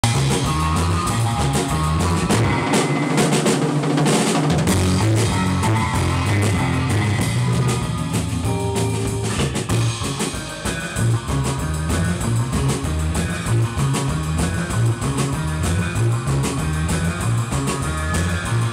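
Surf-rock band playing live and loud: electric guitars and bass over a driving drum kit. The lowest bass notes drop out for about two seconds shortly after the start, then the full band comes back in.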